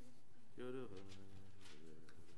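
A man's voice chanting a short phrase of Hebrew liturgy, held and wavering in pitch for about half a second, starting about half a second in, with a fainter trailing phrase after it.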